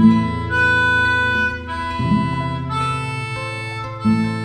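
Instrumental music: a held melody over low chords that change about every two seconds.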